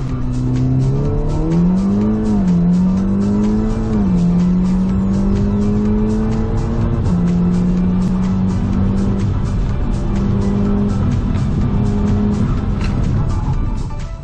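Audi S3's turbocharged 2.0-litre four-cylinder engine heard from inside the cabin on a drag-race launch: the revs climb about a second in, with quick upshifts at about two and a half and four seconds and another about seven seconds in, then the engine note eases off near the end. Music with a steady beat plays over it throughout.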